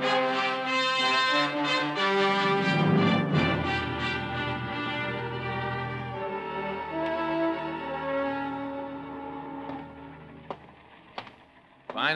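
Orchestral music bridge with brass and strings, loud at first and then dying away over the last few seconds, with two short clicks near the end: a scene-change cue in a radio drama.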